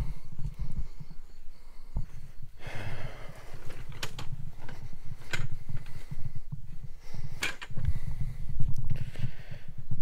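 Footsteps and rustling through dry grass, with irregular low bumps and scattered sharp crackles of handling noise on a handheld camera.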